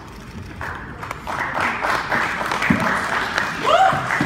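A group of people clapping, starting about half a second in and building to full applause. A voice rises over it near the end.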